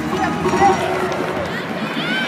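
Voices over gymnastics floor-exercise music playing through the arena speakers.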